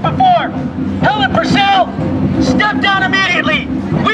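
A raised voice speaking through a megaphone in short phrases with pauses, over crowd chatter.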